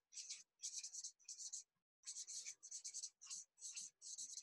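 Red felt-tip marker writing on flip-chart paper: a run of short, faint scratchy strokes as letters are drawn, with a brief pause about two seconds in.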